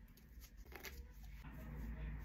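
Faint handling of a pointed heel's ankle buckle straps as they are fastened: a few soft clicks and rustles over low room hum.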